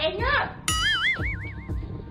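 A cartoon 'boing' sound effect, a springy wobbling tone that warbles up and down for about a second, comes in shortly after a brief spoken word. It sits over background music with a steady beat.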